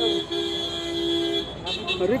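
Vehicle horn honking: a short toot, then a held blast of about a second with two close tones sounding together.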